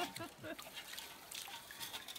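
Faint trickling of water in a shallow rocky creek and in a plastic gold pan being worked at its edge.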